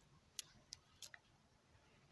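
Four faint, sharp clicks in the first half, the first the strongest: small plastic letter beads on a stretchy elastic friendship bracelet knocking together as it is pulled onto a wrist.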